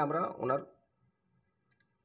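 A man's voice finishing a phrase in the first moment, then near silence for the rest.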